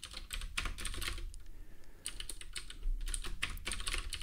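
Typing on a computer keyboard: a run of quick key clicks, thinning out for a moment about a second and a half in before picking up again.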